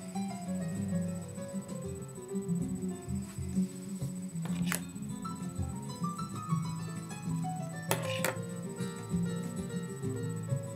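Acoustic guitar music in a flamenco style, quick plucked notes running on, with a few sharp clicks about five and eight seconds in.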